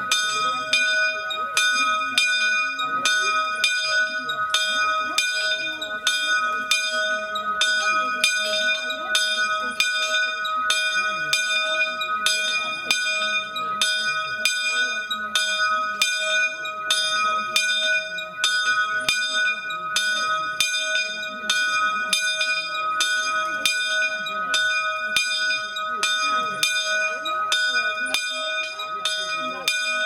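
Single Fratelli Barigozzi church bell tuned to E-flat, swinging in its belfry and rung 'a distesa': an unbroken run of clapper strikes, roughly three every two seconds, each ringing on into the next, calling to the evening rosary.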